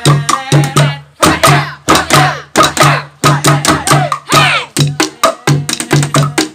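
Improvised street percussion: sticks beaten on makeshift drums and wooden objects in a fast, steady rhythm, with a low boom about twice a second. Loud voices call out over the beat twice.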